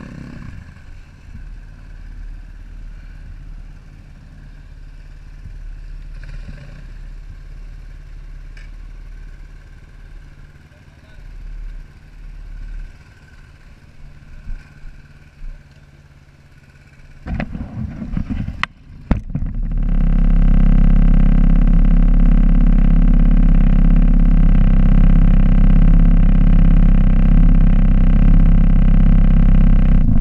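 Enduro dirt bike engines running at low revs, then a few sharp knocks and, from about two-thirds in, a loud, steady engine drone held at a constant pitch, which cuts off suddenly at the end.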